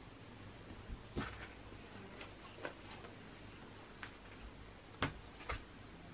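Large paper cross-stitch pattern chart being unfolded and pressed flat on a table: several soft paper crackles and taps, the loudest about five seconds in.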